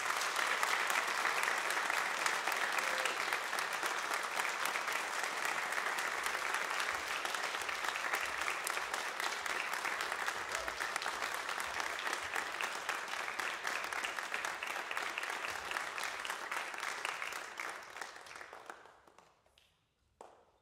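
Audience applauding, dense and steady, then dying away over the last few seconds.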